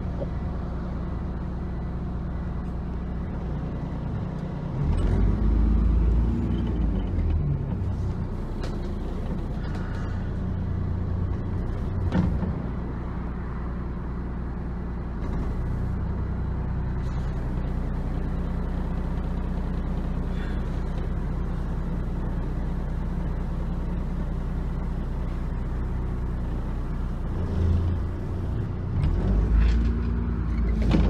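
Bus engine and road noise heard inside a bus: a steady low engine drone that grows louder about five seconds in, with a single sharp knock near the middle and another rise near the end.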